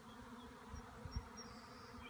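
A honeybee swarm buzzing as a faint, steady hum over a low rumble, with a soft bump about a second in.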